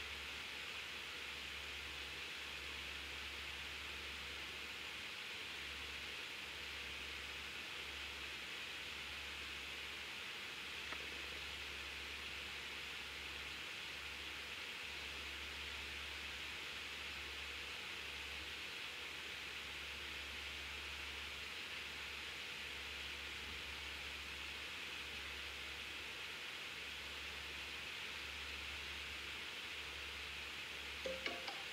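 Faint, steady hiss of room tone with a low hum underneath, and a single small tick about eleven seconds in.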